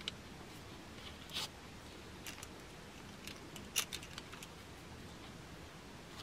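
Faint, scattered small clicks and light handling noise from plastic coins and a foam cauldron cutout being fitted together by hand, the sharpest click a little before four seconds in.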